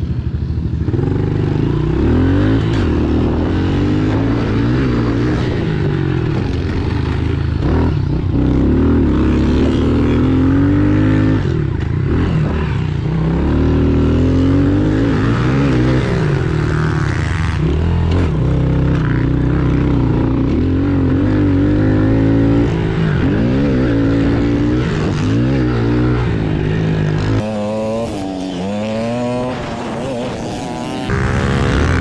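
Small single-cylinder four-stroke pit bike engine, a Honda CRF110, being ridden hard around a dirt track: its pitch repeatedly climbs under throttle and drops back through the gears and corners. The engine eases off near the end.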